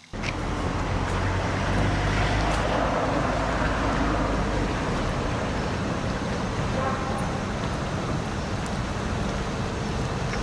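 Outdoor street ambience: steady road traffic noise, with a low rumble strongest in the first few seconds.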